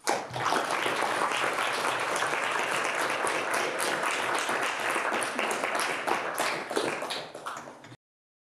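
Audience applauding: many hands clapping at once, starting suddenly and thinning out near the end.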